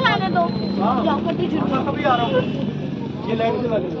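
High-pitched voices chattering over a steady low hum of road traffic.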